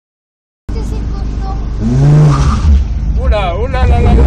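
Competition car's engine revving hard at a hill-climb start line, rising in pitch as it pulls away. A man's excited voice cuts in near the end.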